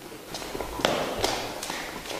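Quick footsteps across a floor, about four steps a little under half a second apart.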